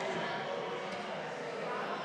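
Indistinct murmur of many voices in a large hall, with no single speaker clear.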